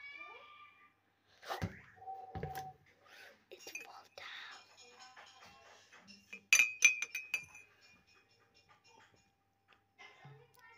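A metal spoon clinking sharply against a glass tumbler several times in quick succession, about six and a half seconds in. A couple of dull knocks come earlier, a second or two in.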